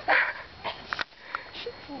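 A woman's short breathy laugh right at the start, followed by a few faint clicks.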